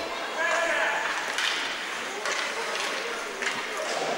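Indoor ice hockey rink sound: faint voices calling out across the arena in the first second, over a steady hall haze, with a few sharp knocks of sticks and puck on the ice.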